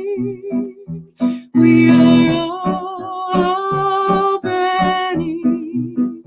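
A slow devotional chant sung with long held notes and vibrato over a plucked-string accompaniment with a steady pulse, swelling louder about two seconds in.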